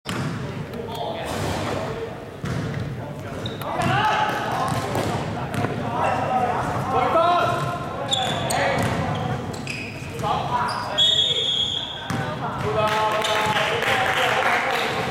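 A basketball being dribbled and played on an indoor court, repeated thuds echoing in a large sports hall, with players' voices calling out and a few short high squeaks.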